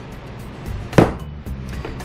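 A single sharp knock of a metal plastisol injector against an aluminum soft-bait mold, about halfway through, over a steady low hum.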